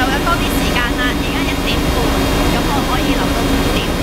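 Passenger ferry's engine running steadily, a constant low hum under a continuous rush of noise, with a woman talking over it.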